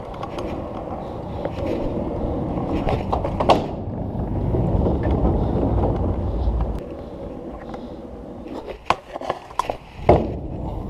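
Stunt scooter wheels rolling over paving, a continuous rumble that grows louder for a few seconds in the middle. Sharp clacks come once after about three and a half seconds and several times near the end.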